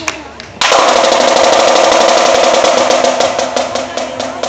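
Marching snare drum: after a brief quiet stretch, a sudden loud, sustained snare roll starts about half a second in and holds steady, opening out into separate strokes near the end.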